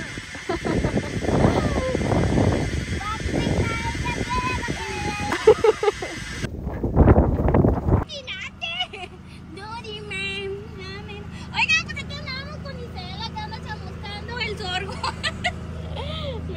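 Outdoor noise with faint voices for the first eight seconds, then, after an abrupt change, a tractor engine's steady low hum heard from inside the cab, with voices over it.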